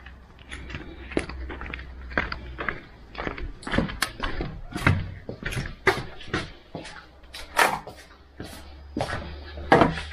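Footsteps with scattered, irregular clicks and knocks as a cloth-covered tray is carried indoors and set down on a wooden desk.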